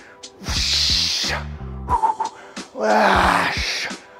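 A man's two forceful exhales from the effort of pressing a 50-pound dumbbell, about half a second and nearly three seconds in, the second strained with a groan. Background music runs underneath.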